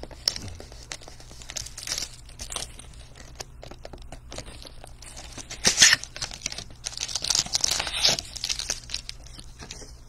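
Plastic shrink wrap being torn off a cardboard trading-card hobby box and crinkled, with the box opened and its packs slid out, in a string of irregular rips and rustles. The loudest rip comes about six seconds in, and a dense run of crinkling follows between about seven and eight seconds.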